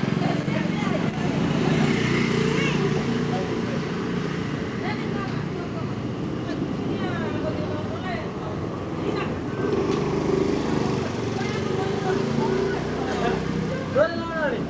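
Street ambience: people talking close by over a steady hum of vehicle traffic.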